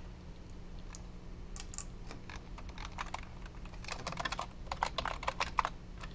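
Typing on a computer keyboard: scattered key clicks beginning about a second and a half in, coming in quicker runs in the second half.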